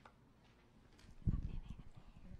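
Low, irregular thumps and rubbing from a podium microphone being handled and bumped, starting a little over a second in.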